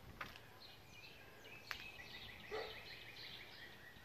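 Faint outdoor birdsong: short high chirps, then a rapid trill of repeated notes starting about two seconds in. Two sharp clicks, one near the start and one just before the trill.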